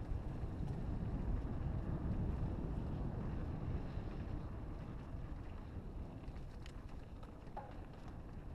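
Wind buffeting the microphone of a camera on a moving mountain bike, over the low rumble of tyres rolling on a dirt trail. It eases a little in the second half, and a couple of light clicks come near the end.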